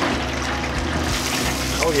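French fries and chicken bubbling and sizzling in a commercial deep fryer, a steady hiss of frying oil, with the baskets sitting deep in a vat well filled with grease.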